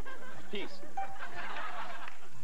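Studio audience laughing, building through the second half, with a few short spoken words early on and background music underneath.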